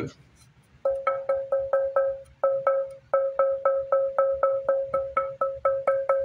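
Honduran mahogany neck billet tapped by hand for its tap tone: a quick run of taps, about four or five a second, starting about a second in, each ringing with a clear, bell-like pitch. The clear ring is the quality the builder prizes in the wood.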